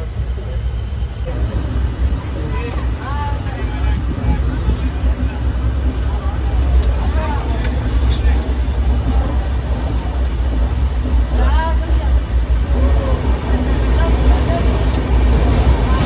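Steady low rumble of an Indian Railways sleeper coach in motion, heard from inside the carriage, with passengers' voices talking over it and a few sharp clicks about halfway through.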